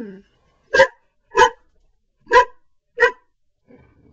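A greyhound barking four short barks in two pairs, the barks in each pair about half a second apart.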